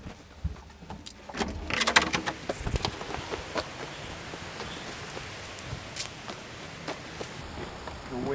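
A run of knocks and clatters over the first three seconds, then a steady rushing of strong wind.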